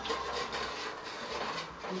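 Wooden spoon stirring and scraping around a metal pot of hot oil with salt, pepper and cloves, with a soft sizzle underneath.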